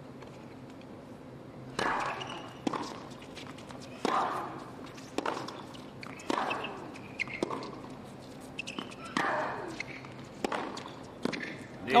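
Tennis rally on a hard court: a serve about two seconds in, then racket strikes on the ball roughly once every second or so, each with a short grunt from the hitting player.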